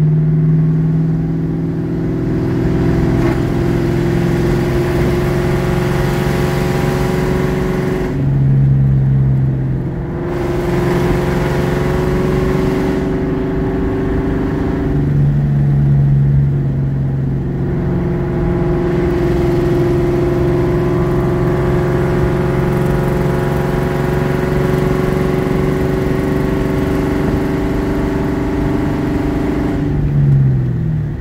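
1998 Mustang GT's 4.6-litre V8 with an aftermarket Comp Cams XE270AH camshaft running without a tune, heard from inside the cabin while driving. The engine note shifts twice, about a third of the way in and again near the middle, with brief dips in level, then settles into a steady cruise.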